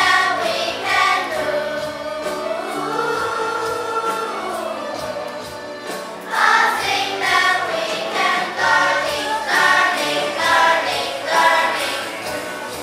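A children's class choir singing a song in English. Long, softer held notes come first; from about six seconds in, the singing turns louder, in shorter phrases.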